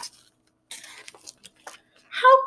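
A hardcover picture book being handled and its page turned: a few short, light paper rustles and taps.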